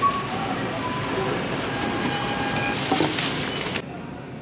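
Busy supermarket background at the checkouts: a steady hubbub of distant voices and clatter, with a short beep right at the start.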